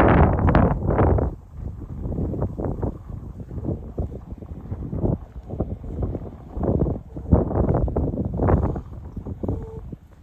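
Wind buffeting the phone's microphone in gusts, a low rumble that is loudest in the first second and then surges and drops irregularly.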